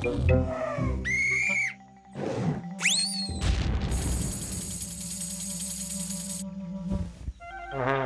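Cartoon soundtrack music with comic sound effects: a whistle-like upward glide about a second in and sharper rising glides around three seconds, then a long held high tone over a low hum.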